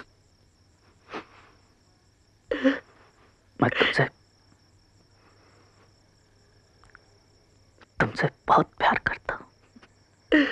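A steady high chirring of crickets in the background, broken by short bursts of a person's voice: one each at about one, two and a half and four seconds in, then a quick run of them near the end.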